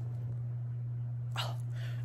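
A pet animal makes a short call about a second and a half in, over a steady low hum.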